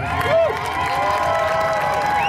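Grandstand crowd cheering, with several long shouts overlapping and rising and falling in pitch over a noisy wash of voices.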